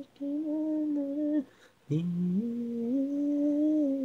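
Isolated male lead vocal singing with no accompaniment: one held phrase, a short pause with a breath, then a longer held phrase climbing in steps.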